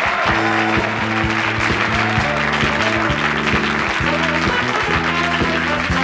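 Live studio orchestra playing a bright, rhythmic tune with a steady beat while the audience applauds over it.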